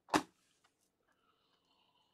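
A single short, sharp knock or snap just after the start, then near quiet.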